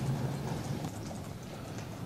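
Quiet room tone with a low hum and faint, scattered light taps and clicks.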